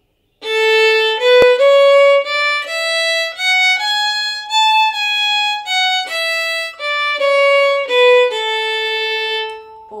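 Violin playing a one-octave A major scale, up from A to the A an octave higher and back down, in a long-short rhythm: each long note is followed by a short one. It ends on a long held low A.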